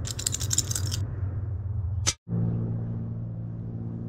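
Eight two-sided plastic counters dropped onto a glass tabletop, clattering for about a second, then one more click about two seconds in. A steady low rumble runs underneath.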